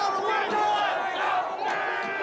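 A large crowd shouting and yelling, many voices overlapping at once.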